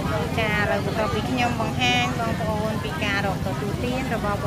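Several people talking at once in a busy open-air market, some voices high-pitched, over a steady low rumble.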